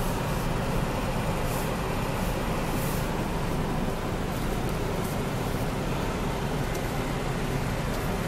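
Steady low rumble of a car's engine and tyres, heard from inside the cabin.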